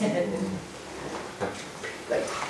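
A short low voice sound at the very start, then a pause of faint room noise with one light knock about one and a half seconds in.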